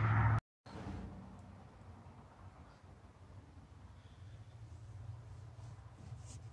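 Quiet room tone with a faint low hum; the sound drops out completely for a moment just under half a second in, at an edit.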